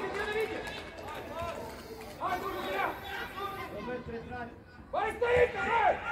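Young footballers' voices calling and shouting across the pitch during play, several at once, with a louder shout about five seconds in.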